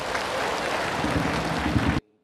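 Arena audience applauding, a dense steady clatter of many hands, with a low pitched sound joining about halfway through. It cuts off suddenly at the end.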